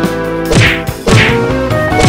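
Movie-style fight sound effects: about three sharp punch thwacks, each with a falling swish, over music with sustained notes.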